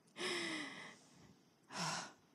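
A woman breathing out audibly into a close handheld microphone, a short breathy exhale with a faint falling pitch. Near the end comes a quick intake of breath.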